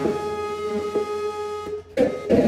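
Live jazz trio music: one long sustained electric bass note with a few soft plucked notes over it. It fades out just before the end.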